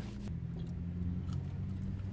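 Steady low hum inside a car cabin, with a few faint soft clicks as a person eats french fries.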